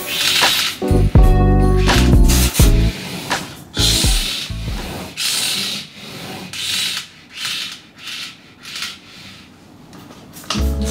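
Background music for the first three seconds, then a string of short scratchy hisses from a wooden drawer's runners as they are sprayed with WD-40 and worked, getting fainter toward the end.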